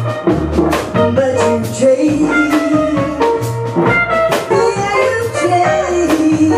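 Live blues band playing: electric guitar, drum kit and upright bass, with a woman singing.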